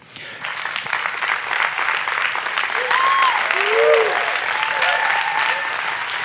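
Audience applauding, swelling over the first few seconds to a steady level, with a few short whoops and cheers rising over it around the middle.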